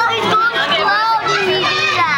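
Young children's voices chattering and calling out over one another in high voices.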